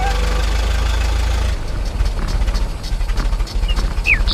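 Vehicle engine sound effect for a toy camper van: a steady low idle, then from about a second and a half in a pulsing, chugging rumble as it drives off.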